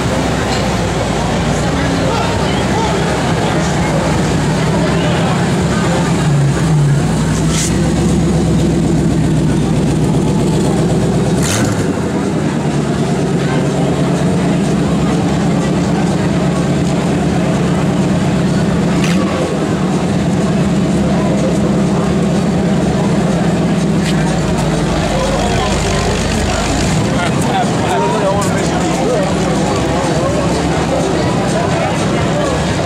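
Engine of a Lamborghini Countach-style supercar running steadily at low revs, heard close up, with a few sharp cracks over the engine note.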